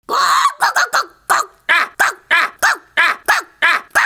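A performer's voice giving a string of about a dozen short, pitched animal-like calls, roughly three a second, the first one longer.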